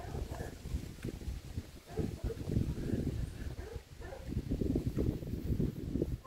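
Walking outdoors with a handheld microphone: irregular wind rumble on the mic and footsteps on asphalt, with faint distant voices.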